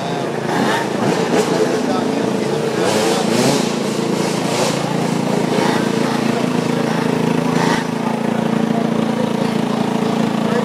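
Two-stroke KTM 300 dirt bike engine revving up about three seconds in, then running steadily, amid a crowd's shouting and chatter.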